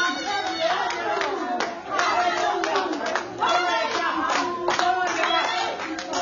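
Hands clapping repeatedly, with voices raised over the clapping.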